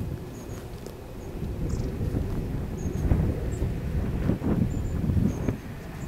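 Wind buffeting the microphone of a handheld camera outdoors: a low rumble that swells and drops unevenly. Faint short high chirps come through a few times.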